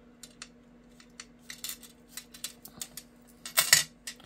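Light clicks and taps of hands and a bead-handled craft pick working on a glass craft mat, coming more often after the first second and a half. A louder short clatter comes near the end.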